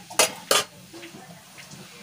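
A metal spatula clinks twice against a metal kadai, the two sharp knocks about a third of a second apart in the first second.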